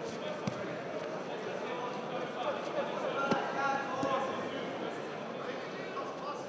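Indistinct voices of spectators and coaches echoing in a large hall, with a couple of short thuds as grapplers scramble and go down onto the mats.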